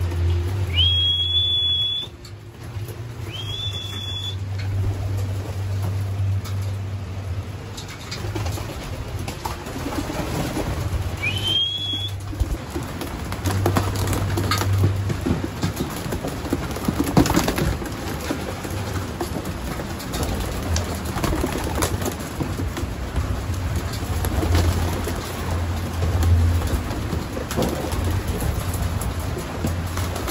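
Domestic racing pigeons cooing and flapping their wings as they crowd in to feed, with many short flutters and scuffles through the second half. A few short high whistles sound in the first seconds and once more a little before the middle.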